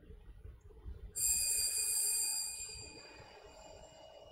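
A bright, high ringing tone starts suddenly about a second in, holds steady for over a second, then fades out, over a faint low room rumble.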